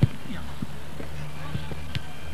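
A football kicked once with a sharp thud at the start, followed by a few lighter knocks, over a steady low hum.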